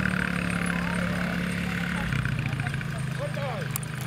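Quad bike engine running steadily, its pitch dropping about two seconds in, with distant voices.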